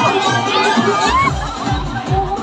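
A large crowd shouting and whooping over loud DJ dance music. About halfway through, a heavy bass beat drops in and keeps pounding.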